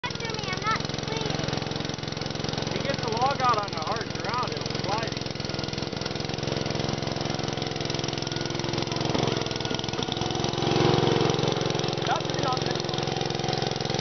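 Garden tractor's small engine running steadily under load as it tows a log, growing louder about ten seconds in.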